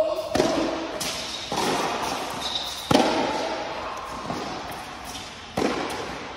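Tennis rally on an indoor court: the racket hits and ball bounces land as a string of sharp pops, each with a long echo in the large domed hall. The serve is struck at the start, and the loudest hit comes about three seconds in.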